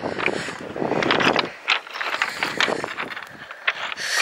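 Footsteps crunching up a shingle bank of large rounded pebbles, the stones clacking and grinding against each other underfoot in uneven clusters about once a second.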